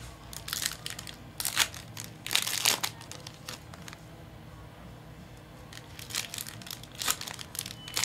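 Foil trading-card pack wrappers crinkling as the packs are handled and opened by hand, in short bursts of rustling with a quieter stretch in the middle.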